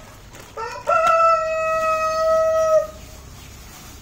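A rooster crowing once: a short rising start, then one long, steady call of about two seconds that cuts off.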